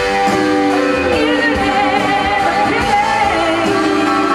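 Live rock band performance: a woman's voice sings over electric guitars and drums.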